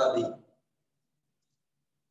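A man's voice speaking, ending about half a second in, then near silence for the rest.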